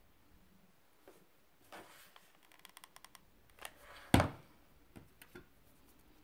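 Handling noise from hands twisting thin wire around a foamiran flower: soft rustling and a run of small quick clicks, with one sharp knock a little after four seconds in, the loudest sound, then a few lighter clicks.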